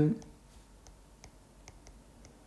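A stylus tip tapping and clicking on a tablet's glass screen during handwriting: about half a dozen light, irregular clicks.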